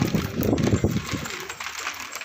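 A flock of Indian high flyer pigeons pecking at feed pellets in a tray, giving a dense, rapid patter of small beak clicks. A louder, lower sound rises over the clicks in about the first second.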